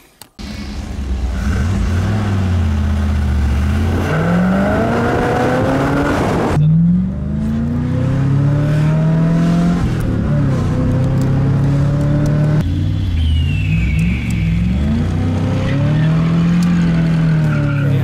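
1990 Pontiac Firebird's throttle-body-injected engine, breathing through a now functional hood scoop, pulling hard under acceleration on the road. Its pitch climbs and levels off several times across a few edited takes.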